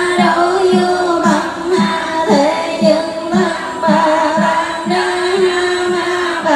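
Vietnamese Buddhist sutra chanting: several voices chant a sustained, melodic line together, kept in time by a steady knock about two and a half times a second, typical of a wooden fish.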